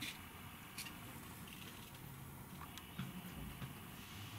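Quiet room tone with faint handling noise: a few light clicks and small rustles as fingers pick out a bristle from a yellow brush and set a digital caliper on it.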